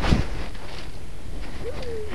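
Low, steady rumbling noise on the camera's microphone, with a knock at the start.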